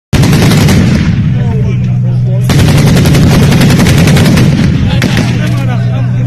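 Automatic weapons firing in rapid bursts, starting abruptly, easing about a second in and coming back heavily at about two and a half seconds, over a steady low engine hum from an armoured vehicle. Men shout in the lull.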